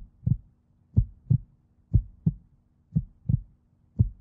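Heartbeat sound effect: a double thump about once a second, played as a suspense cue while contestants decide whether to press the button, over a faint steady hum.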